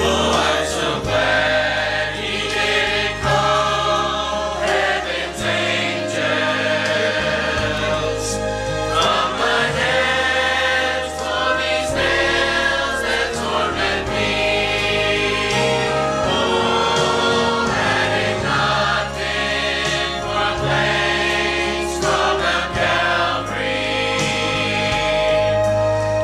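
Mixed church choir singing a gospel hymn in parts, over instrumental accompaniment with a steady bass line that changes note every second or two.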